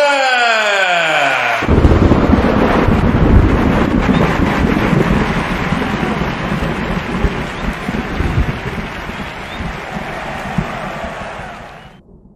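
A held tone slides down in pitch for about a second and a half. Then a thunder sound effect breaks in suddenly: a loud rumble with a crackling, rain-like hiss that slowly dies away and fades out near the end.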